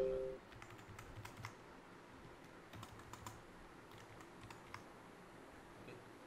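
Faint, scattered computer keyboard keystrokes in small clusters, a figure being typed into a spreadsheet cell. At the very start, the tail of a two-note ringing tone fades out.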